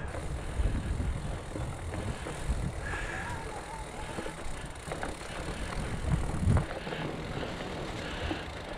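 Mountain bike riding over a leaf-covered dirt singletrack: a steady low rumble of tyres on the trail, with knocks and rattles from the bike and a heavier thump about six and a half seconds in. A short high squeak comes about three seconds in.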